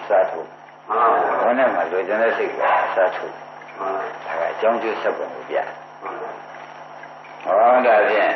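An elderly man's voice delivering a Burmese Buddhist sermon in an old, low-fidelity recording, with a steady low hum and a faint high whine running under the voice.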